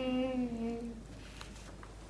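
A person humming one long note that drifts slightly down in pitch and fades out about a second in, followed by a couple of faint clicks.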